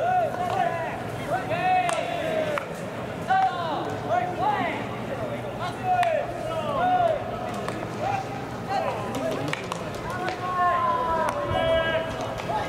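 Baseball players shouting short, drawn-out calls to one another during infield fielding practice. Many high voices overlap, and each call rises and falls in pitch.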